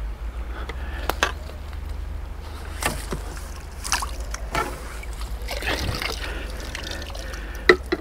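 Water trickling and dripping from a fishing landing net as it is lifted from a lake, with a few sharp clicks and knocks from the tackle being handled, over a steady low rumble.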